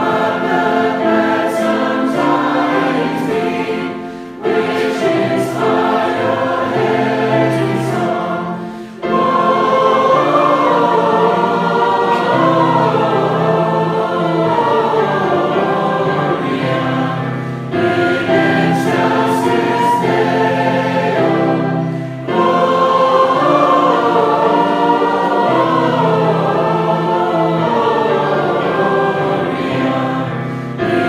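A congregation singing a hymn together in phrases, with brief pauses for breath between them, accompanied by flute.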